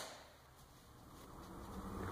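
Near silence: faint room tone, with no distinct sound.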